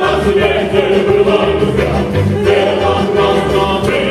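A vocal trio, one woman and two men, singing together in harmony through microphones, with a small live band of accordion and bass guitar under them.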